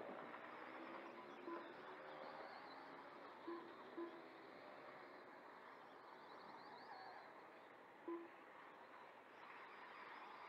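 Faint running whine of small electric RC motorcycles circling a dirt oval, rising and falling in pitch, with four short same-pitched beeps at uneven gaps from the lap-timing system as bikes cross the line.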